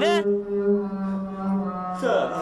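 A man's voice singing one long held low note, sliding down into it at the start and fading near the end.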